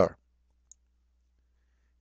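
A man's voice finishes a word just at the start, then near silence with one faint click about two-thirds of a second in.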